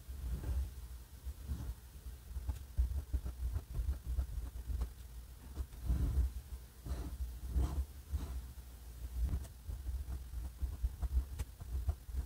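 Vintage Pelikan 140 fountain pen's flexible nib scratching across paper as a cursive word is written: faint, irregular strokes over a low steady rumble.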